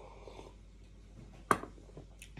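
A glass coffee cup set down on a countertop: one sharp, loud clink about one and a half seconds in, after a faint sip.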